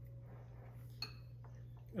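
A metal spoon clicks once against a glass bowl about a second in, over a faint steady low hum.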